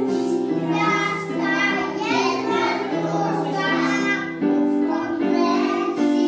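A group of young children singing a song together to piano accompaniment.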